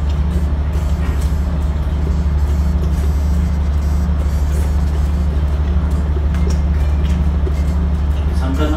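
Loud, steady low drone of a ship's engines and machinery, heard inside a cabin.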